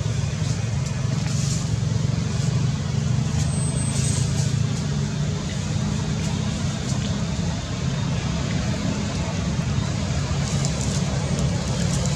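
A steady low motor drone with a constant hiss over it, like a motor vehicle running nearby.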